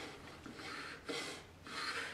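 Quiet rubbing of a hand tool against a plywood board: three short strokes, each about half a second long.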